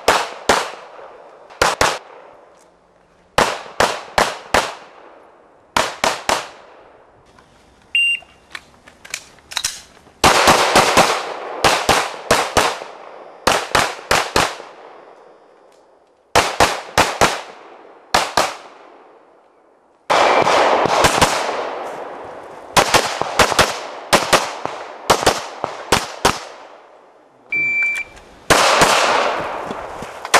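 Strings of rapid pistol shots from a Glock, in quick pairs and runs of several shots with short pauses between strings, each crack leaving a brief fading ring. Near the end a shot timer gives one short steady beep, and a new string of shots follows about a second later.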